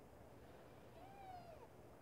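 A small tabby kitten gives one faint, short meow about a second in, its pitch rising a little and then falling.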